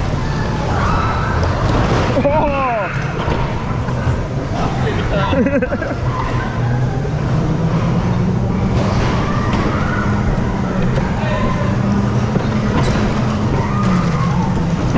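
Dodgem car running around the rink, heard from the driver's seat: a continuous low rumble with a steady low hum that settles in about halfway through.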